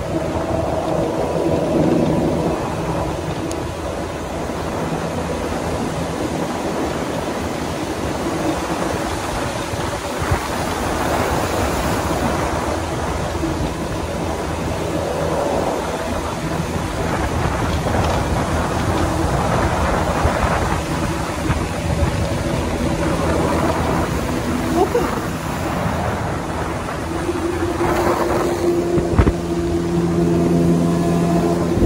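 Outboard jet motor pushing a jet sled through shallow river water: a steady engine hum under the rush of water and spray along the hull. The engine note grows stronger over the last few seconds.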